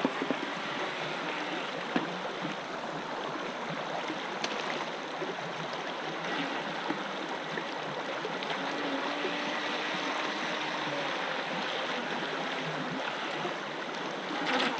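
Shallow mountain stream rushing over a stony bed: a steady, even rush of water.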